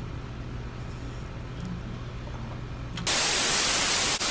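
Quiet room tone with a steady low hum, then about three seconds in a loud burst of TV-style static hiss from a VHS-look video transition effect, lasting about a second.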